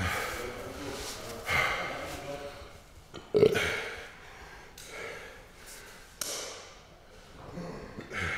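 A man's short breathy vocal sounds close to the microphone, in separate bursts about every second and a half, like snorts, gasps or muttered half-words. The loudest and sharpest comes about three and a half seconds in.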